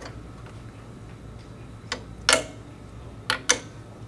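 Calibration object and its plates being handled and snapped onto the magnetic mounts inside a 3Shape D2000 dental scanner: a faint click, then a louder clack about two seconds in, and two quick sharp clicks near the end, over a low steady hum.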